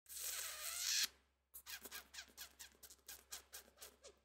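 A breathy hiss through the teeth lasting about a second, then a run of soft, irregular clicks, several a second.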